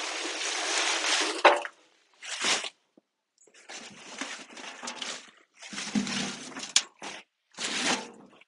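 Leafy plant debris and soil rustling as they are tipped onto a compost heap. Then comes a series of short scrapes and rustles as handfuls of soil and leaves are scooped by gloved hands out of a steel wheelbarrow, with a small knock near the end.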